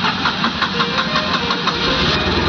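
Tata Nano's two-cylinder petrol engine being cranked by its starter motor in a rapid, even rhythm, then catching and starting to run near the end.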